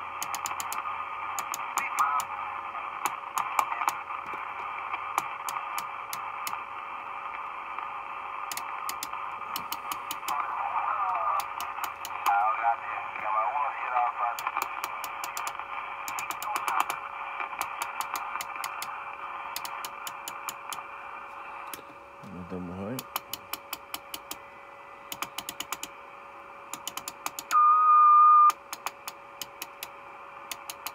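Marko CB-747 CB radio's speaker giving band hiss and faint, warbling distant voices over a steady tone, while its rotary channel selector clicks through channels in quick runs of detents. Near the end a loud steady whistle comes through for about a second.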